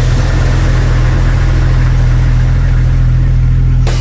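A car engine running steadily, a loud low rumble that cuts off suddenly just before the end.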